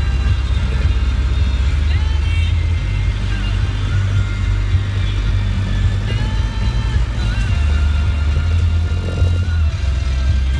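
Land Rover 90's engine running at low speed in the cab, its note dropping about three seconds in and picking up again after about seven and a half seconds. Music with a melody plays over it.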